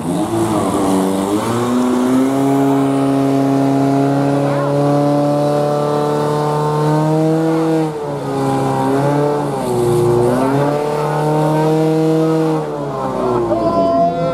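Portable fire-pump engine running at high revs, pumping water to the hose lines. Its pitch climbs at the start, holds steady, dips briefly twice about two-thirds of the way through, then falls away as it is throttled back near the end.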